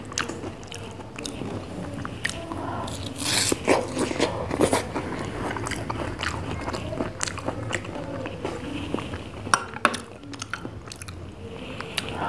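Close-miked eating of ice cream falooda: repeated bites and chewing with many small sharp mouth clicks, a few louder bites about three to five seconds in.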